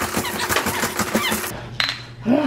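Plastic toys on a baby activity jumper rattling and clicking as the baby bounces, with a few short high squeaks. After a sudden cut, near the end, comes a single ringing clink of two glass beer bottles knocked together.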